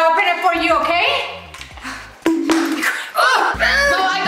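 Background music with a voice over it, and a brief sudden sharp sound a little past halfway.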